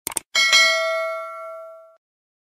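Sound effects from a subscribe-button animation: a quick double mouse click, then a notification bell dings once and rings out, fading over about a second and a half.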